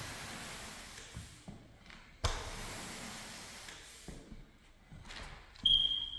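T-bar applicator swishing across a hardwood floor as it spreads wet polyurethane, in two long strokes that each start abruptly and fade out. Near the end a knock with a short metallic ring, the loudest sound, as something is set down on the floor.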